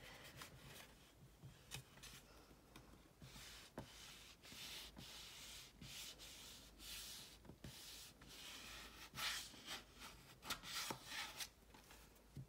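Bone folder rubbing over paper to crease and smooth it down onto an album cover: faint, irregular scraping strokes, a few louder ones near the end.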